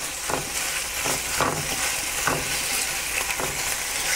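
Crumbled firm tofu and fresh spinach sizzling in hot oil in a skillet, a steady high hiss, while a slotted spatula stirs and scrapes through the pan four times, about once a second.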